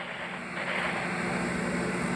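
A steady low mechanical hum with a faint hiss, growing slightly about half a second in.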